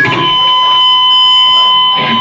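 A loud, steady, high-pitched feedback whine from the band's live amplification, holding one pitch with a fainter higher overtone.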